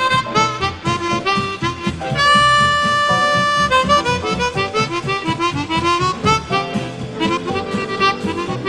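Chromatic harmonica playing a swing jazz melody over a band's steady rhythm accompaniment, with one long held note about two seconds in, then quick running phrases.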